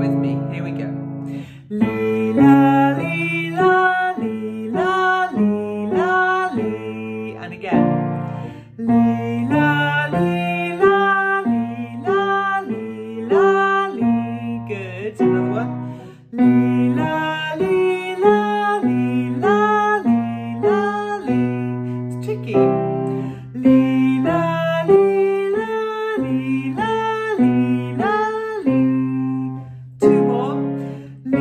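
A woman singing a vocal warm-up exercise on alternating 'lee' and 'la' syllables, moving between a lower note and a bright top note up to a major sixth, in short repeated phrases with brief gaps, over instrumental accompaniment.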